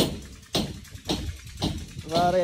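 Hammer striking a steel chisel into brickwork, about two blows a second in a steady rhythm, the blows fairly faint.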